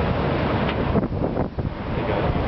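Wind blowing across the camera's microphone: a loud, steady rush with a short dip about one and a half seconds in.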